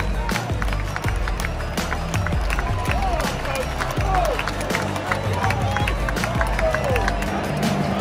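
Stadium PA music with a heavy bass line playing over a cheering crowd, with close handclaps and shouting voices.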